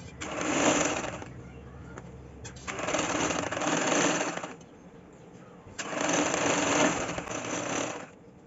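Nissan sewing machine stitching in three separate runs, the first about a second long and the next two about two seconds each, with short pauses between. It is sewing a stitch line along a fold of fabric.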